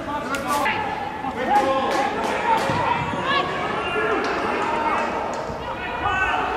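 Footballers shouting and calling to each other across the pitch of an empty stadium, with several sharp thuds of the ball being kicked.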